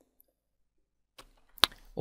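Near silence, then a single sharp click about a second and a half in, followed by a faint hiss just before speech begins.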